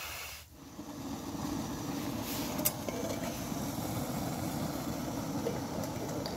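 Gas canister camping stove burning steadily under a pot, heating water for a hot drink, coming in about half a second in. A couple of light clicks a little over two seconds in.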